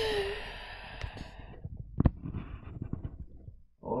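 Rustling and small knocks of a camera being handled and repositioned, with one sharp knock about two seconds in. A short falling sigh at the very start.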